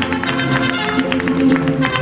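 Mariachi band playing an instrumental passage with no singing: sustained melody notes over a quick, sharply plucked rhythm.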